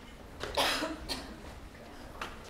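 A single cough about half a second in, with a few short taps like footsteps on a stage floor before and after it.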